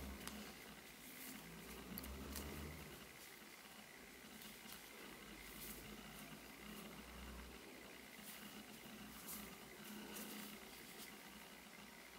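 Near silence with faint, scattered light ticks and rustles of a crochet hook working yarn.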